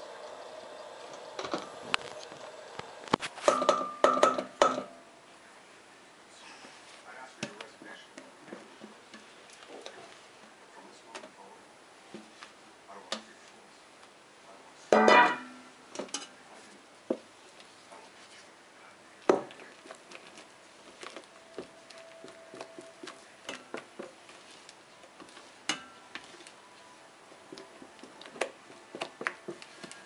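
Silicone spatula scraping and tapping against a stainless steel bowl as whipped cream is folded into a chocolate mousse base: scattered soft clicks and scrapes, with louder bursts about four and fifteen seconds in.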